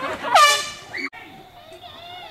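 A person's laugh breaking into a loud, high-pitched shriek about half a second long that falls in pitch at its end, cut off abruptly about a second in.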